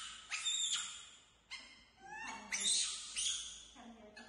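Baby macaques squealing in short high-pitched bursts, with one call rising in pitch about two seconds in.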